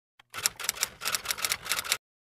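Typewriter sound effect: a quick run of key clacks, about six or seven a second, starting about a third of a second in and cutting off suddenly.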